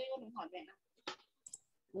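Brief soft speech, then two sharp computer mouse clicks a little after a second in, under half a second apart.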